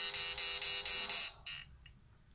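Homemade push-pull inverter board and transformer giving off a loud, high-pitched electronic whine that stutters in quick, regular pulses as the multivibrator chops its output. It stops about a second and a quarter in, with one short burst after.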